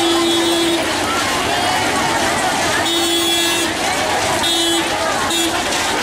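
Vehicle horn honking in steady single-pitched toots: one ending under a second in, a longer one about three seconds in, then two short ones, over a crowd of voices.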